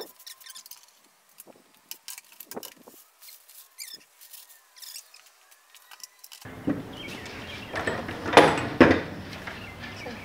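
Faint crackling and small clicks of wax paper being peeled off a glued-up wooden tabletop, then the rustle and clunk of pipe clamps coming off and the wooden panel being handled, with two sharp knocks about half a second apart late on.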